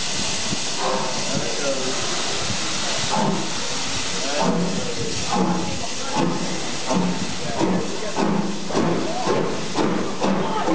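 BR Standard Class 2 2-6-0 steam locomotive no. 78022 hissing steam, then starting away with exhaust beats from about four seconds in that gradually quicken as it gathers speed.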